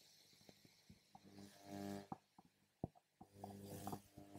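Near silence in a hall, with a faint, distant voice twice and a few light clicks.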